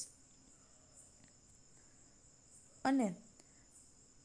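A pause in a woman's narration: a faint, steady high-pitched whine runs through the background, and one short vocal sound with a falling pitch comes from her about three seconds in.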